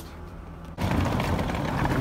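A quiet low hum, cut off about a second in by loud, ragged rumbling noise: wind buffeting the microphone outdoors.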